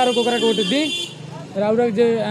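A vehicle horn sounds steadily for about a second and then cuts off, under people talking.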